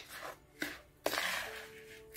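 Spatula stirring and scraping through a stiff, crumbly mix of ground biscuits and fruit yogurt in a bowl, in two strokes: a short one, then a longer one that fades over about a second.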